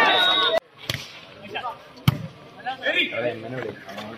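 Loud shouting voices at the start that cut off suddenly, then two sharp hits of a volleyball being struck about a second apart, the second louder, with players calling out afterwards.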